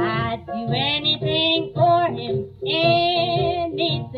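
A 1944 Decca 78 rpm shellac record playing a small-band blues: piano, string bass and drums, with a wavering, bending lead line over them. The sound has little treble, like an old disc.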